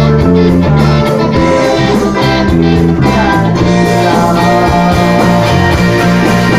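Live band playing a rock-style song at full volume: electric guitars with sustained bass notes and a steady beat, and a voice singing along.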